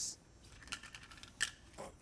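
A few short, faint scrapes as a felt furniture slide is pushed into place under a wooden cabinet leg on a hardwood floor, the loudest about halfway through.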